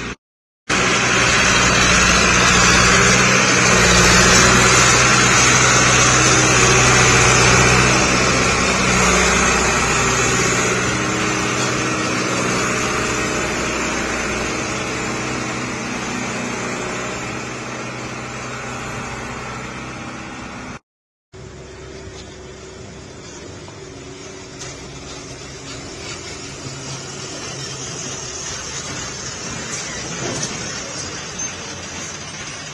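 Heavy truck engine running close by, loudest in the first several seconds and then slowly fading away. The sound cuts out completely twice, briefly: just after the start and about two-thirds of the way through.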